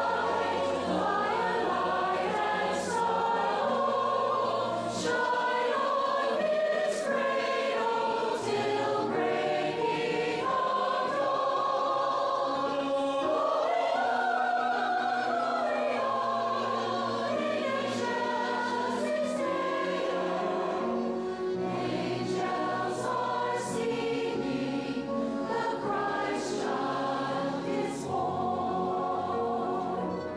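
Large mixed adult choir singing a sacred piece with orchestral accompaniment.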